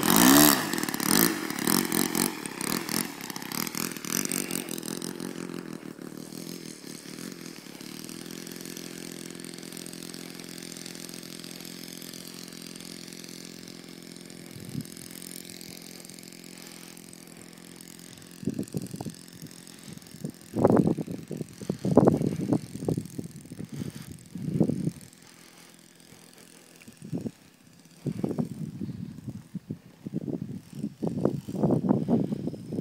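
O.S. 52 four-stroke glow engine of an RC model plane running. It is loud close by at first, then settles to a steady, quieter drone, with irregular louder surges in the last ten seconds.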